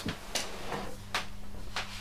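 Two faint clicks about a second apart over a low steady hum.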